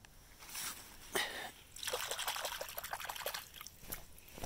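Shallow creek water being disturbed: a single splash about a second in, then a second and a half of quick small splashes and trickling.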